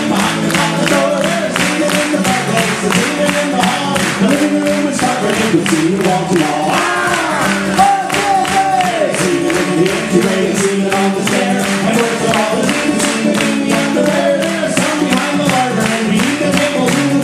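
Many voices singing together as a crowd chorus over an acoustic guitar strummed with a steady beat.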